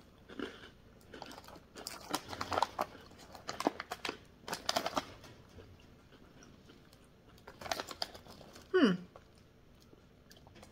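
Close-up crunching and chewing of a crisp ube-filled cracker: irregular crackly crunches for the first few seconds, then fewer and quieter chews. Near the end there is one short voice sound that falls in pitch.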